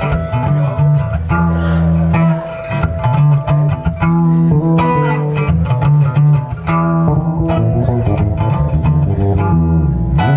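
Instrumental passage on acoustic guitar and bass guitar, the bass holding strong low notes under repeatedly struck guitar chords.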